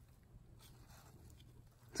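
Near silence, with faint soft rustles from a gloved hand moving through moist coffee-ground bedding in a worm bin.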